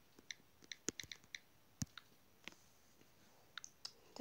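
Faint, irregular clicks of typing on a tablet's on-screen touchscreen keyboard, about a dozen key taps in quick clusters with a pause in the middle.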